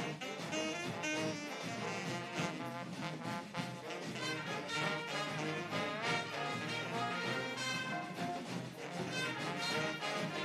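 A live big horn band playing an upbeat jazzy tune: trumpets, trombones and saxophones together over a steady drum beat.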